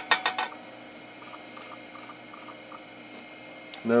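A few small clicks in the first half second as fingers handle a small LED lead on the pins of a hard-drive controller circuit board, then a steady electrical hum.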